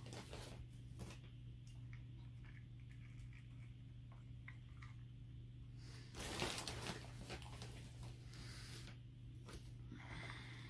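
Faint rustling and pattering of seed-starting mix being scooped and poured from a small cup into a peat-pot seed tray, with a louder rustle about six seconds in. A steady low hum runs underneath.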